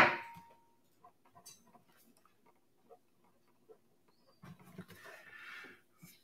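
A single auctioneer's gavel knock on the rostrum at the very start, ringing briefly as it dies away, marking the lot as sold. Then only faint rustles near the end.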